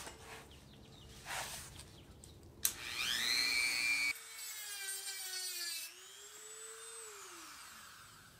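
Small corded handheld rotary tool spinning up to a high whine about three seconds in. It runs with its pitch wavering as it cuts out the plastic wiring-connector opening in a car door, then winds down near the end.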